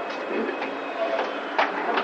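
Steady rushing noise inside a Schindler traction elevator car, with a few sharp clicks and rattles in the second half, the loudest about one and a half seconds in.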